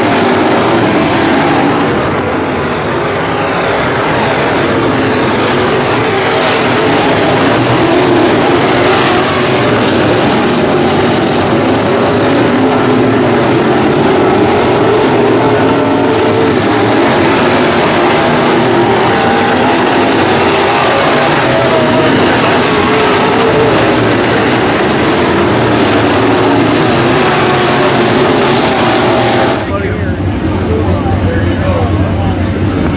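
IMCA Modified dirt-track race car engines running on the track, a loud, steady drone.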